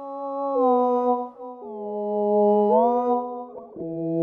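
Synth pad played through the Antares Harmony Engine plug-in: sustained harmonized notes that change every second or so, sliding briefly in pitch from one note to the next.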